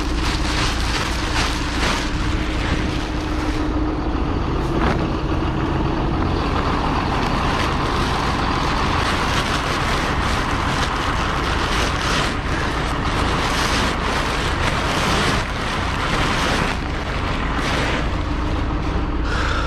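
Tractor engine running steadily at idle while granular kieserite fertilizer pours from a big bag into a spreader hopper, with crackling and rustling from the bag's plastic liner.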